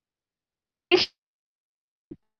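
A single short sharp burst of breath and voice from a person, about a second in.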